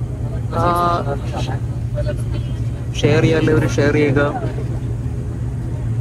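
Steady low drone of a turboprop airliner's engine and propeller, heard from inside the cabin while taxiing. Voices talk over it twice.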